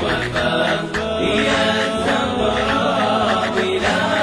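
Arabic devotional chant (nasheed): voices singing a wavering melody continuously.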